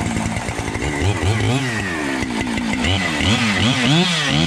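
Husqvarna chainsaw running and being revved over and over, its pitch rising and falling a couple of times a second, faster toward the end.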